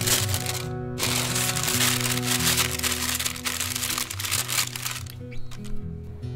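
Parchment paper crinkling and crackling as it is pressed into an air fryer basket, with a short pause about a second in and stopping about five seconds in. Background music plays underneath.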